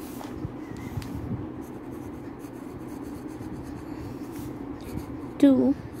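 A pen writing on ruled notebook paper in short scratching strokes, over a steady low hum.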